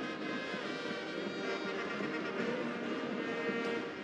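Background music with long held tones, steady in level throughout.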